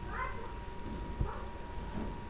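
Two short, high-pitched cries, one right at the start and one just over a second in, with a faint steady whine and room noise underneath.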